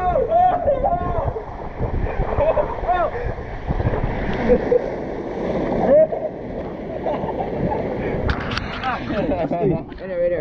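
Water rushing and splashing around an inner tube sliding down an enclosed water slide and out into the splash pool, with the riders shouting and whooping over it.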